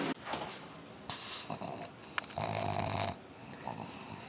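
A pug's noisy breathing: a few short faint breaths, then a longer, louder one about two and a half seconds in.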